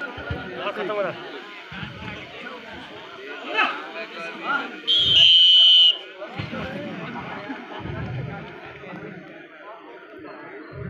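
A referee's whistle blown once, a single long, shrill blast of about a second, about five seconds in, over crowd chatter and voices.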